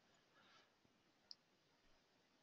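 Near silence, with one short, faint click a little past halfway.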